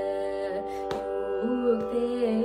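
Carnatic music: a sung melody with wavering ornaments over a steady drone. One sharp percussive stroke comes just under a second in, and the melody re-enters on a new held, wavering note about a second and a half in.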